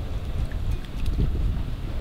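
Wind buffeting an outdoor microphone: a steady low rumble, with a few faint clicks.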